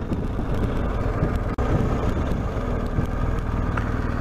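Motorcycle engine running steadily at low speed, with a brief break in the sound about one and a half seconds in.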